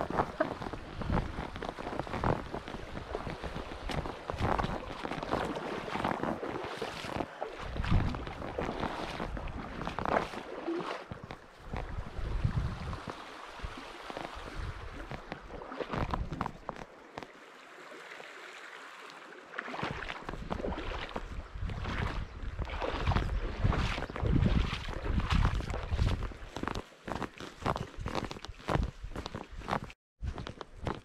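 Hiking boots splashing through a shallow river crossing over the sound of running water, the steps coming irregularly, and later footsteps on a dry dirt trail.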